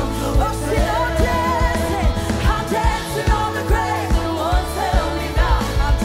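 Live worship band playing an upbeat song with a woman singing lead over a steady drum beat, about two beats a second.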